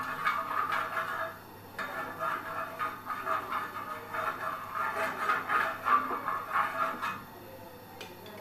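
Steel spoon rubbing and scraping over a hot iron tawa, spreading ghee in repeated strokes, with a brief pause about a second and a half in and stopping about seven seconds in.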